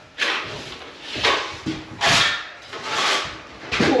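Plastering trowel scraping wet plaster along a taped plasterboard joint in repeated strokes, about one a second, as the tapes are filled out.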